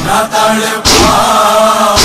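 Nauha being recited: a chorus of voices holds the refrain, cut by loud, sharp claps of matam, mourners beating their chests together, about once a second, with one strike near the middle and another at the end.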